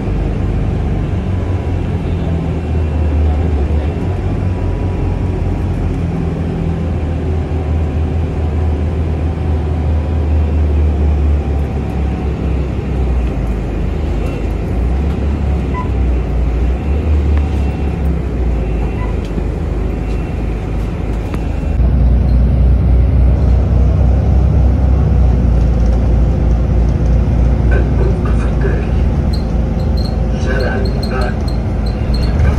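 Bus engine and road noise heard from inside the cabin: a steady low rumble. About two-thirds of the way through, it gives way to a louder, deeper rumble.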